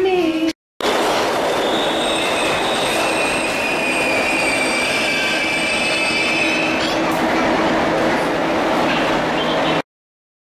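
New York City subway train (C line) in a station: a steady loud rumble and rattle. A high metallic squeal of steel wheels runs through the middle few seconds. The sound begins just under a second in, after a brief dropout.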